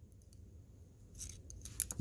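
Needle-nose pliers working a carabiner's wire gate spring up into the gate, with small metal clicks and scrapes. It is almost silent for the first second, then a handful of faint sharp clicks, bunched near the end.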